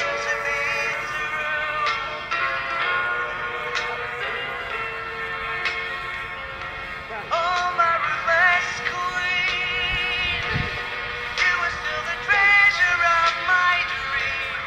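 Music: a song with a wavering lead vocal melody over sustained chords.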